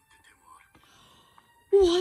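Faint dialogue from an anime playing through laptop speakers, then a woman's loud exclamation near the end.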